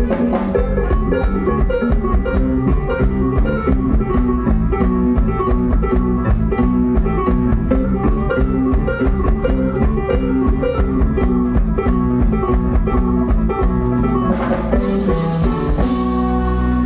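A live Latin band plays an instrumental passage: congas and drums keep a steady, driving rhythm under a bass guitar line and keyboard chords.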